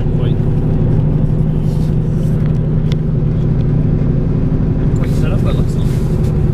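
Steady road and engine drone inside a moving car's cabin at highway speed, with a low, even hum.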